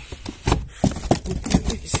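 Irregular taps and knocks as a yellow peacock bass is handled and picked up off the hard plastic deck of a kayak.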